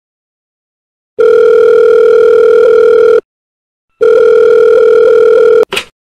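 Telephone ringback tone: the line ringing through in two long steady tones of about two seconds each, with a short gap between them, then a brief blip near the end as the call is picked up.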